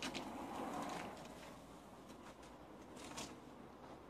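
Faint rustling of work clothes and a few light clicks of bolts and a hand tool being handled as a person kneels at a tow bar assembly.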